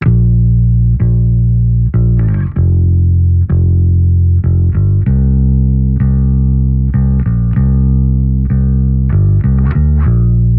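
Solo electric bass guitar line played back through its mix chain: a blend of DI and SansAmp signals, an Ampeg B15N amp plugin and a Universal Audio 1176LN compressor adding a couple of dB of compression for an even level. Plucked notes change about once a second, with quick runs of notes a couple of seconds in and near the end.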